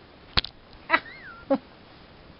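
Chihuahua puppy vocalizing in play: a short yip about a second in, a brief high falling whine, then another short yip. A sharp knock comes just before.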